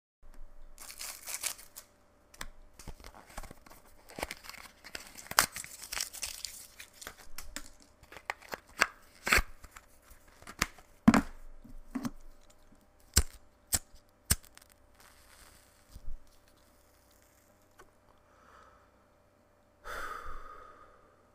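A wrapper crinkling and being torn, with many irregular sharp clicks and snaps. It thins out and goes quiet over the last few seconds.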